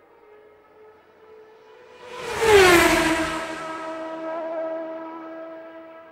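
Intro music sting over a title card: a swell that peaks in a loud whoosh about two and a half seconds in, its pitch dropping and settling into a held tone that fades away.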